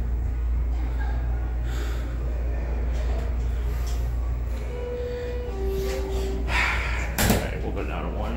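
Schindler hydraulic passenger elevator arriving at a floor: a low steady hum, then a two-note falling chime about five seconds in, followed by the doors opening with a rush of noise and a sharp knock about seven seconds in.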